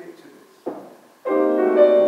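Grand piano: after a short knock about two-thirds of a second in, playing starts suddenly at about a second and a quarter with a loud chord, and several notes keep ringing together.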